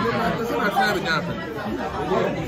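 Indistinct chatter: several voices talking over one another around a dining table.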